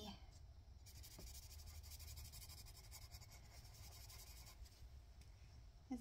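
Colored pencil scribbling on paper, faint rapid strokes shading in a small area, starting about a second in and stopping shortly before the end.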